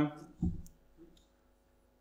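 The end of a man's spoken "um", then a soft low thump about half a second in and a couple of faint clicks in a quiet room.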